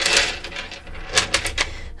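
A short rush of noise, then several quick light clicks close together.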